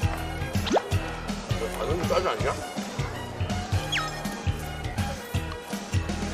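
Upbeat background music with a steady beat, overlaid with cartoon-style sound effects: a quick rising whistle glide about a second in and a short falling whistle glide near the four-second mark.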